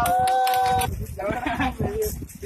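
Children's voices: one high call held steady for about a second, then excited, overlapping chatter.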